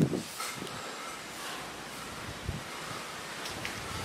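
Outdoor ambience: a steady hiss of wind and rustling tree leaves, with a soft thump about two and a half seconds in.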